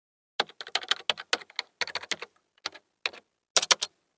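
Computer keyboard typing: a run of quick, irregular key clicks that starts about half a second in and stops just before the end.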